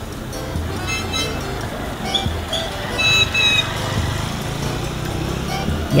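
A motorcycle taxi's engine idling in the street, a steady low hum, under background music with a few short high notes.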